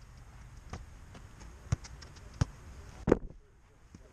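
A soccer ball being kicked and caught, heard as about four short, sharp thuds, the loudest two about two and a half and three seconds in.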